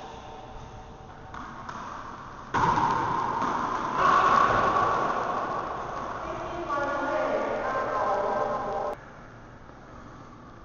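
Wordless voice sounds that start suddenly a few seconds in, get louder, fall in pitch near the end and cut off sharply.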